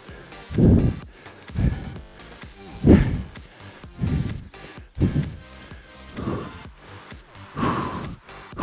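Background workout music with a man's hard breaths pushed out into a close microphone, roughly one a second, in time with repeated lunges.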